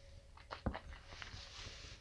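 Faint mouth sounds of whisky being sipped and tasted: a few small lip smacks and clicks about half a second in, then a soft breath drawn in over the spirit.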